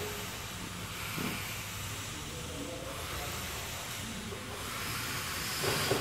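Steady workshop background noise: a faint, even hiss with no distinct event.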